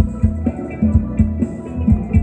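Live band playing Thai ramwong dance music: a steady kick-drum beat over a bass line, with keyboard or guitar parts above.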